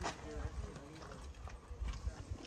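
Faint, indistinct voices of people talking, with low thumps underneath.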